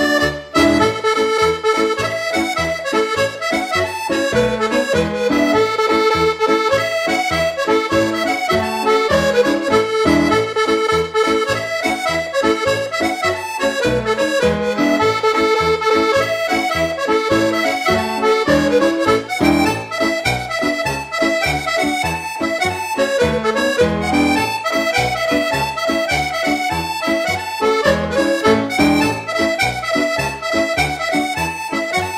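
Piano accordion played solo: a Scottish 6/8 pipe march, the right hand playing a running melody over a steady beat of left-hand bass notes and chords.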